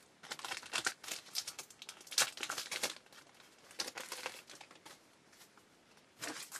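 Foil wrapper of a trading-card pack being torn open and crinkled by hand, in irregular bursts of crackling that die down over the last second or so.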